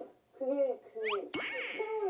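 A bright ding about 1.4 s in: a sharp strike with a clear high ringing tone that hangs on, amid short bits of talk.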